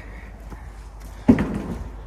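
A door banging once, loud and sudden, about a second in, with a short ringing tail.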